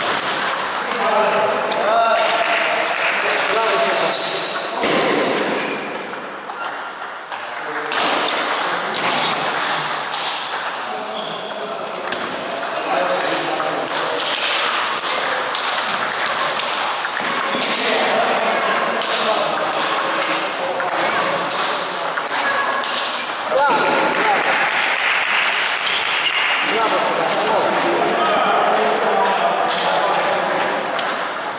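Table tennis balls clicking repeatedly off bats and table tops, from this rally and the games at neighbouring tables, with people talking in the background.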